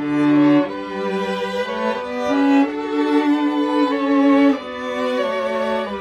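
String quartet of two violins, viola and cello playing a Christmas medley arrangement: slow, held bowed chords that change about once a second, with the cello's low line beneath.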